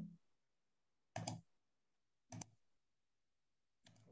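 Computer mouse clicking in near silence: a double click about a second in, another about a second later, and a faint click near the end.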